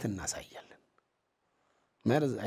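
A man speaking, his phrase trailing off in the first moment, followed by a pause of near silence.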